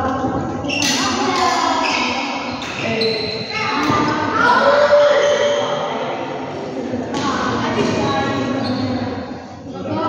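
Voices echoing around a large indoor sports hall, with a few sharp thuds of badminton rackets hitting the shuttlecock and players' footsteps on the court.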